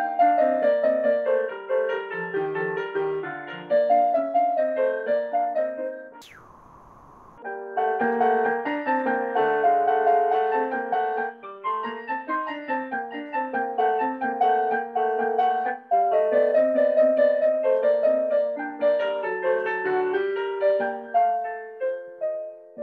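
Acoustic piano playing a gentle, legato study in even running sixteenth notes shared between both hands. About six seconds in, the sound drops out for just over a second, starting with a sharp falling whistle-like sweep, before the playing returns.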